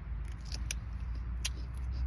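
A small knife slicing through a crisp green meat radish, giving a few short, sharp crunching snaps; the loudest comes about a second and a half in. A low steady rumble runs underneath.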